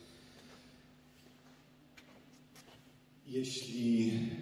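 Quiet room tone with a steady low hum and a few faint clicks; about three seconds in, a man starts speaking into a handheld microphone.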